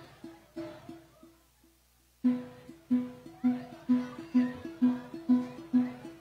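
A traditional string band playing an instrumental tune, led by plucked guitar-type strings. They pick a low two-note bass figure in a steady beat of about two notes a second. It is soft at first, breaks off briefly about a second and a half in, then comes back clearly louder at about two seconds.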